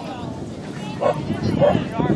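A dog barking twice, two short barks a little over half a second apart, with people talking in the background.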